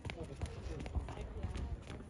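A few sharp knocks of a tennis ball striking a hard court, against faint talking voices and a low rumble.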